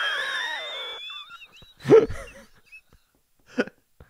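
A person's high, thin wheezing vocal sound that glides and fades away over about a second and a half, then a short laugh about two seconds in.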